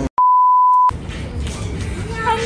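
A single steady electronic beep at one pitch, lasting under a second and cutting in and out sharply: an edit-inserted bleep tone, with the background sound dropped out around it.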